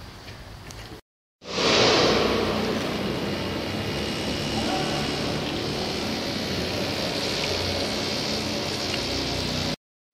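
Construction-site noise: a steady, loud rushing sound like running machinery. It starts abruptly about a second and a half in and is loudest in its first second.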